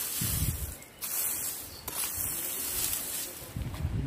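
Dry, sun-cured cut grass and weeds rustling crisply as a metal hand tool rakes through the pile in a few strokes. The crisp sound is the sign that the grass is fully dry and ready to burn.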